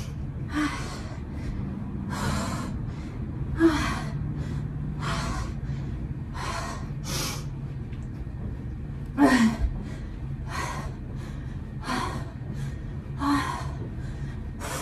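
A woman's sharp, forceful breaths, about one every second and a half, as she hard-exercises through repeated jump-ups from a seated position. Some breaths carry a short voiced grunt, and the loudest comes about nine seconds in.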